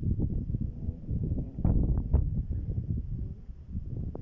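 Wind buffeting a handheld camera's microphone: an irregular low rumble with a few brief knocks.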